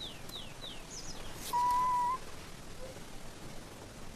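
Forest birds calling over a faint steady background: a few quick falling chirps in the first second, then a single steady whistled note, the loudest sound, about a second and a half in.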